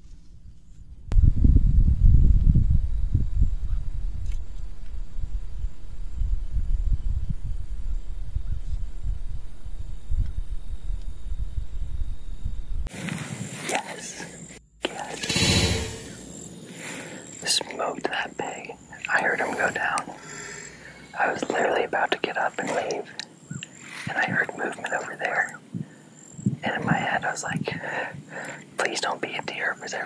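A loud low rumble for about the first twelve seconds, then a compound bow shot at a feral hog about fifteen seconds in: one short, sharp sound reaching across the whole range.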